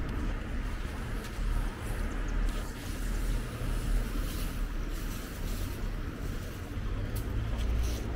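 City street noise: a steady hum of traffic on the avenue, with a low rumble underneath.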